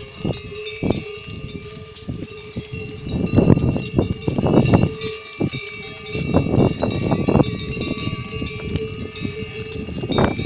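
Bells on a train of pack yaks ringing steadily as the animals walk past over rocky ground, with irregular bursts of rough noise over the top.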